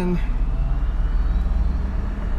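Cabin sound of the Bexus, an electric-converted BMW running on a Lexus hybrid drive, on the move under light throttle: a steady low road and drivetrain rumble with a faint high whine from the electric drive rising slowly in pitch.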